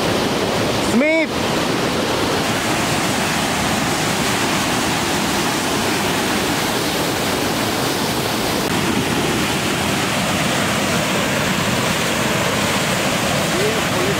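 Fast canal water pouring from an outlet and churning into white water, a steady rushing noise. A short voice call is heard about a second in.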